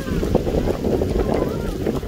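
Wind gusting across the phone's microphone, a loud, uneven low rumble.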